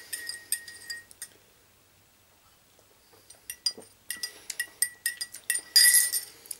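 A spoon clinking against the cup as the tea is stirred: quick, ringing taps in a short spell at the start, then a pause of about two seconds, then a longer spell of quicker clinks.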